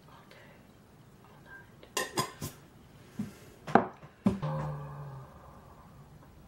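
Metal lid and glass candle jar clinking and knocking together as they are handled: a few light clicks about two seconds in, then two louder knocks about half a second apart, the second followed by a brief low tone.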